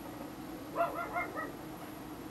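An animal giving four short, high-pitched calls in quick succession, starting just under a second in, over a steady low hum.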